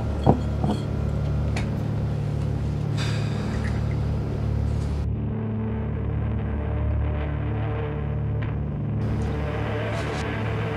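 Low, steady droning background music. There are a couple of short knocks in the first second, and the sound turns muffled for a few seconds in the middle.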